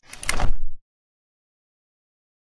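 Logo-animation sound effect: a short whoosh with a deep low rumble that swells for about half a second and cuts off sharply before the first second is out.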